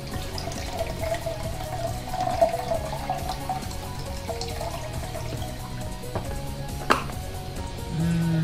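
Lemon-flavored water poured from a plastic pitcher into a stainless steel mug, the stream strongest in the first few seconds, over background music. A single sharp knock near the end.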